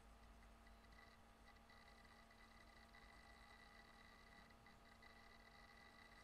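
Near silence: room tone with a faint steady electrical hum.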